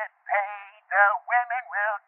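A high-pitched voice singing in quick syllables, about three a second, thin and tinny with no low end.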